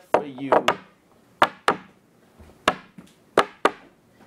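A series of sharp knocks on a hard surface, about eight in four seconds at an uneven beat. The knocks carry on through the singing around them, as a rough percussion beat to the song. A short sung word sits at the start.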